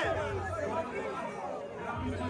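Crowd of spectators chattering, many voices talking over one another at moderate level.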